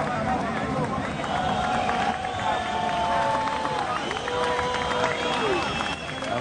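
Arena crowd at a boxing match, a steady noise of many voices with a few long, drawn-out shouts standing out above it.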